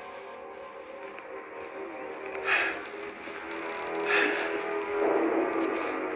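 Suspenseful background music score of sustained, held tones that swells toward the end, with two short sounds about two and a half and four seconds in.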